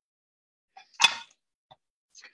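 Mostly silence broken by one short, sharp click about a second in, with a faint tick just before it and another near the end.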